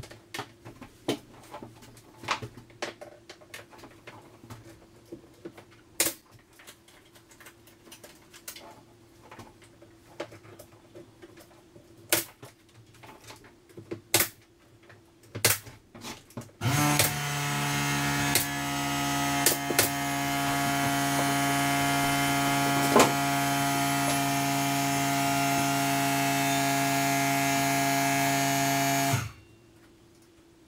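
Sharp knocks and taps of trim work for about the first half, then an electric air compressor motor starts suddenly and runs steadily for about twelve seconds, getting slightly louder as it goes, before cutting off abruptly.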